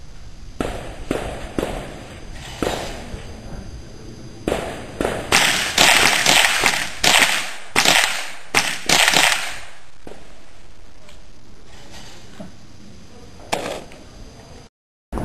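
.22 semi-automatic rifle firing: a few spaced, quieter shots, then a fast run of about a dozen loud shots in the middle, each with a short ringing echo, and a single shot near the end.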